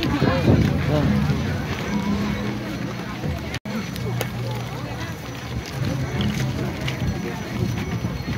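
Crowd of people talking and calling out, with music faintly underneath. The sound drops out for an instant a little past halfway.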